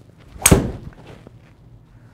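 A Callaway Epic fairway wood's maraging steel face striking a golf ball off a hitting mat: one sharp crack about half a second in that rings away briefly. The shot is struck cleanly.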